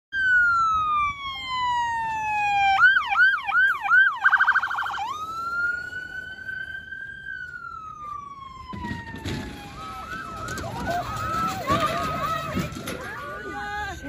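Electronic emergency-vehicle siren cycling through its patterns: a long falling wail, a few seconds of quick yelps, a very fast warble, then a slow rising and falling wail. From about nine seconds in, a second siren yelps over it with wind noise on the microphone.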